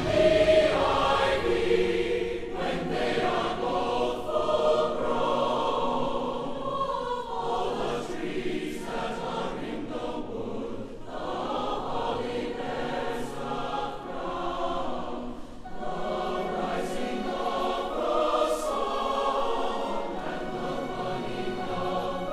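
A choir singing a Christmas carol in long held phrases.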